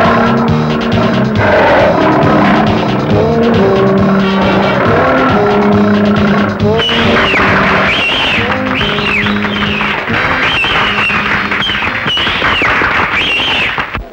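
Loud film background music with held notes and a moving melody. About halfway through, a run of high swooping glides joins in, repeating about once a second.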